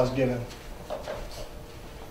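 A man's voice trailing off at the start, then a few faint knocks in a small room.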